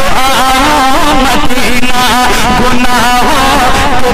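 A man singing a naat into a microphone, drawing out long ornamented notes that slide and waver in pitch with no clear words.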